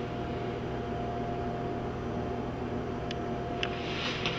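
Steady background hum and hiss of a room, with a faint steady tone through it and two faint ticks near the end.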